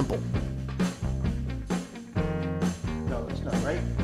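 Punk rock song playing: electric guitar chords over bass and drums, with a singer's voice in places.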